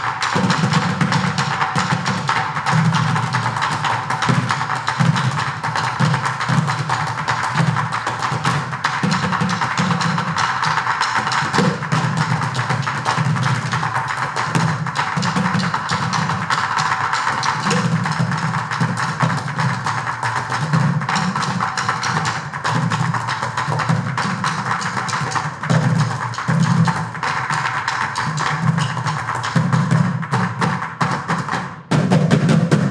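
Percussion ensemble of six playing upturned plastic buckets with drumsticks: a dense, continuous rhythm of low bucket thuds and sharp stick hits.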